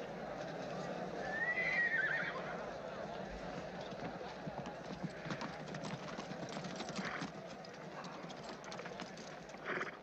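A horse whinnies once, loudly, about a second and a half in, over the clip-clop of hooves; a murmur of voices runs underneath.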